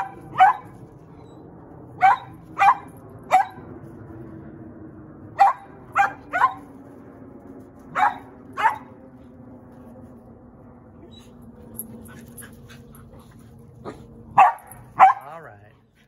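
A dog barking excitedly in short, sharp barks, singly and in quick runs of two or three, about eleven in all. There is a pause of several seconds before the last two.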